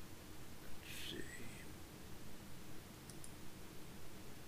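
A short breathy, whisper-like vocal sound about a second in, then two faint computer mouse clicks about three seconds in, over a low steady room hum.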